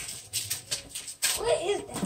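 Scattered light rustles and knocks of things being handled, with a short stretch of a person's voice about one and a half seconds in.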